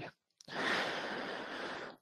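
A person's long breath out, a sigh into a close microphone, starting about half a second in and lasting about a second and a half.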